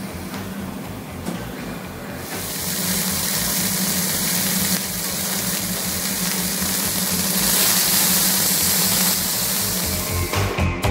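Hamburger patty sizzling on a hot flat-top griddle, a steady hiss that grows louder about two seconds in, with a low steady hum underneath.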